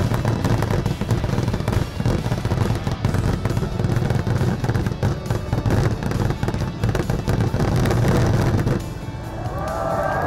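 Fireworks bursting and crackling in a dense barrage, with music underneath. The barrage stops about nine seconds in.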